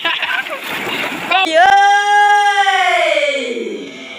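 Water splashing as a person plunges headfirst into shallow muddy water, followed by a loud, long held note that slides down in pitch near the end.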